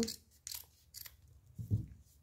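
Scissors snipping through a folded stack of grosgrain ribbon: two short, crisp snips about half a second apart, then a soft low knock near the end.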